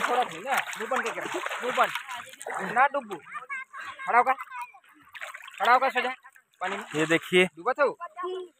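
Floodwater splashing and sloshing as a hand slaps the surface and people swim, densest over the first two seconds, with people's voices talking through the rest.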